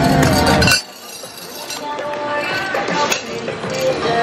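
Voices and music, cut off abruptly less than a second in, then quieter voices and music with light metal clinking from the chains and fittings of a chain swing ride seat.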